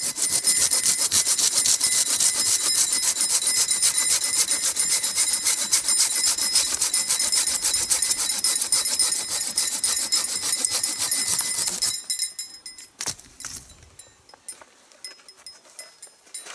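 Silky Gomboy 210 folding pull saw cutting through a wooden pole: rapid rasping strokes with a high ringing note from the blade, which stop about twelve seconds in. A single click follows about a second later.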